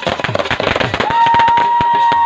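Ground fountain firework crackling as it sprays sparks. About a second in, a loud, steady high tone begins and holds.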